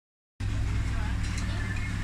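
A steady low rumble with faint voices in the background, starting abruptly a moment in, and a light click or two partway through.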